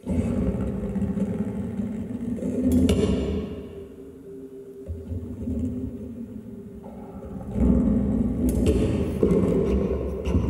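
Experimental music from an invented acoustic instrument with live electronics: a dense, rumbling low drone with steady low tones that starts abruptly. It swells with a burst of hiss about three seconds in, drops back, and surges loud again near the end.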